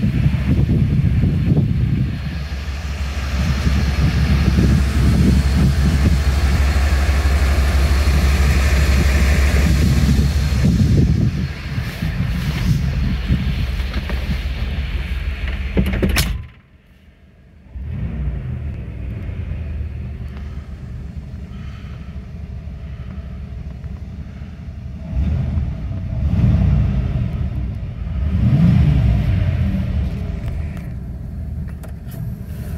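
Wind buffeting the microphone: a heavy, gusting low rumble that eases after about eleven seconds. Just past the middle it breaks off with a sharp click, drops to a much quieter second, then comes back in gusts.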